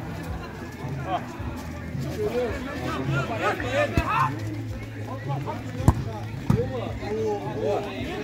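Players' voices calling and shouting across the pitch during an amateur football game, over a steady low hum. Two sharp thuds of the ball being struck cut through, about four seconds in and, loudest, near six seconds.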